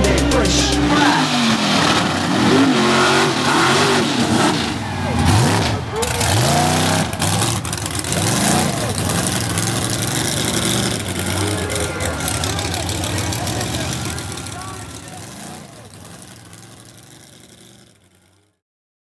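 Mud-bog trucks' engines revving in repeated rising and falling surges, with people's voices shouting over them. The sound fades out over the last few seconds.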